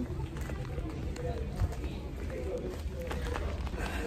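Hurried footsteps and the low rumble of a handheld phone being jostled while walking, with faint voices in the background.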